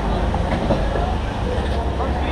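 Steady low rumble of service-area background noise, with indistinct voices of onlookers and crew in the background.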